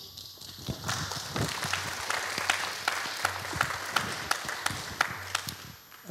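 Audience applauding, a dense patter of many hand claps that builds over the first second and dies away just before the next speaker begins.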